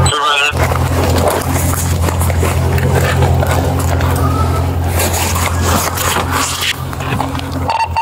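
A car's steady low engine hum, picked up through a body-worn camera, with clothing rustle, scrapes and knocks of gear and the door as the wearer climbs out of the vehicle.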